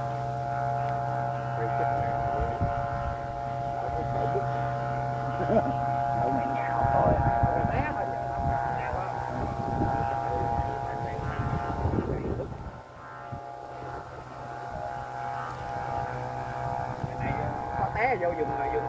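Kite flutes (sáo diều) on a kite flying in strong wind, sounding a steady droning chord of several held tones. From about six to twelve seconds in, rough gusty wind noise swells under them.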